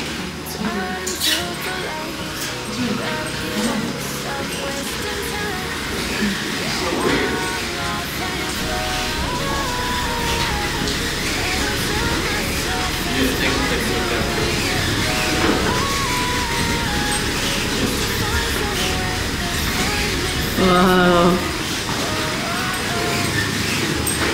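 Music playing over a steady rushing background noise, with a short melodic line in the middle. About three-quarters of the way through comes a brief, loud voice with a wavering pitch.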